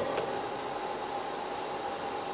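Steady background hiss of the hall and its sound system, with a faint high hum running through it.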